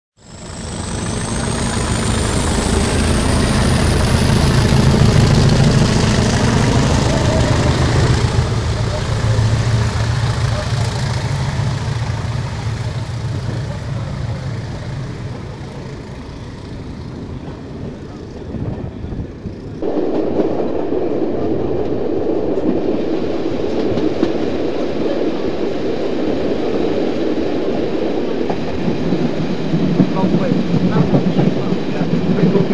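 English Electric Class 20 diesel locomotives' V8 engines running, a heavy low drone with a high whistle sliding in pitch over the first few seconds, then easing off. About 20 seconds in the sound cuts abruptly to the steady rushing noise of the train on the move.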